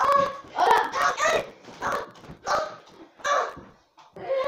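Boys laughing and shouting in a string of short, loud bursts, about six in four seconds.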